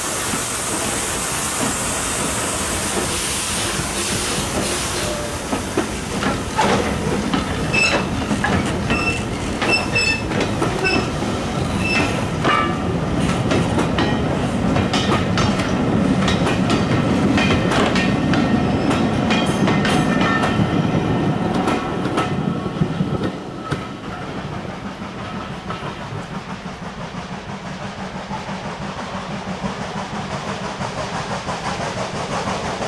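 Vintage wooden-bodied railway coaches rolling slowly past, their wheels clicking over the rail joints over a steady rumble. The rumble builds and then drops away abruptly late on.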